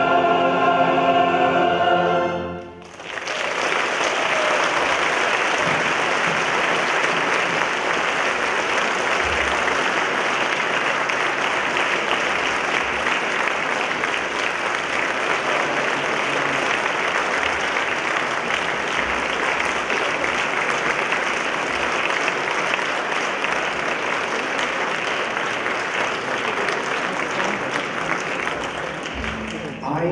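Choir, male solo singer and orchestra holding a final sustained chord, which cuts off about two and a half seconds in. Then long, steady audience applause.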